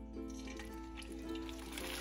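Soft background music with held notes. A little way in, a hiss of frying starts as battered bread goes into hot oil in a cast iron skillet.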